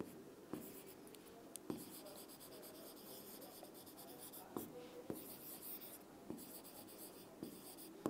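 Faint writing on a board: quiet scratching strokes of the writing tip, with a few light ticks as it touches down.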